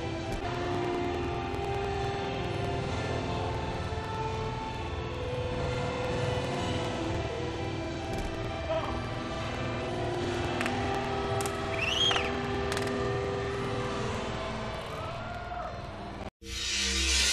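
Music playing over a large arena's sound system, mixed with the low, steady murmur of a crowd in a big hall. About twelve seconds in, a short high tone rises and falls once.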